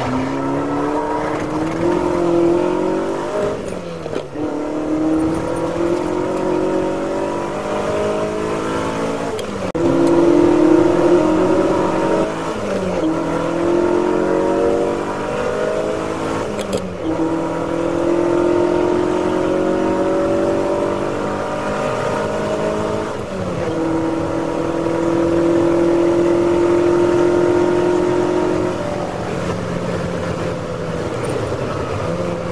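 Ferrari 308 GT4's V8 engine at racing revs, heard from inside the car, pulling hard through the gears: the pitch climbs and drops sharply at each of several gear changes. Near the end it holds a long, steady high note at full throttle in top gear.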